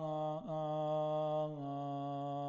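A man chanting a mourning recitation, holding one long drawn-out note with a brief vocal turn about half a second in, then settling slightly lower in pitch about one and a half seconds in.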